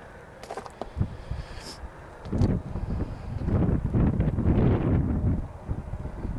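Wind buffeting the microphone in gusts, a low rumble that builds about two seconds in and eases shortly before the end, with a few faint clicks at the start.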